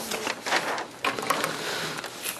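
A marker writing on a flip-chart pad: a run of short, irregular strokes and taps of the pen on the paper.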